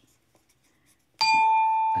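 Near silence, then about a second in a single bell-like tone sounds suddenly and rings on, slowly fading: a quiz show's wrong-answer 'ding' sound effect.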